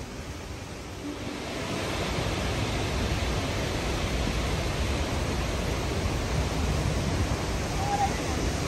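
Steady rush of fast-flowing river water over rapids, with a deep rumble underneath. It grows louder about a second and a half in and then holds level.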